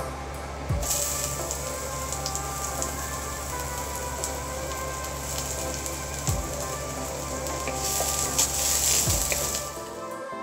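Sliced red onions sizzling in hot oil in a nonstick frying pan. The sizzle starts suddenly about a second in as they hit the oil, and grows louder near the end.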